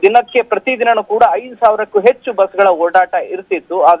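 Only speech: a man talking steadily in Kannada.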